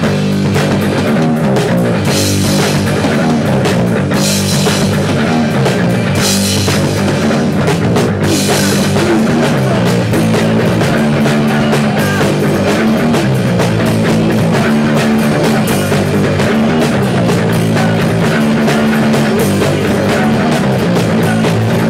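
Punk rock band playing an instrumental passage: a drum kit with cymbal crashes over a repeating low guitar and bass riff. The crashes come about every two seconds in the first half.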